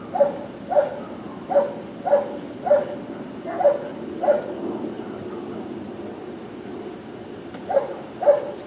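A dog barking repeatedly in short, sharp barks, about seven in quick succession, then a pause of a few seconds before the barking starts again near the end.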